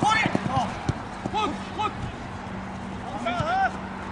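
Short shouts and calls from players and spectators on a football pitch, coming in quick bursts, with sharp thuds of the ball being kicked near the start.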